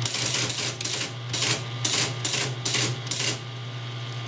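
Teletype Model 33 ASR printing characters one at a time as they arrive over its 20 mA current loop at 110 baud. There is a short clack for each letter, about ten in all at two or three a second, over the steady hum of its running motor.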